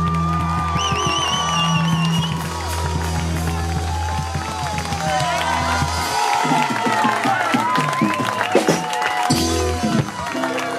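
Live band of electric guitars and bass holding the song's closing chords, with a sustained low bass note that stops about six seconds in. After that, a crowd of voices shouting and cheering.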